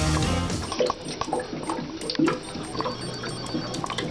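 Background music stops under a second in. Then water sounds follow: short bubbly glugs and drips with a few light clicks.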